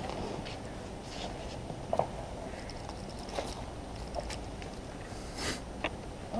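Faint footsteps and shuffling, with a few light knocks, as people move and crouch on a hard floor, over a steady low hum.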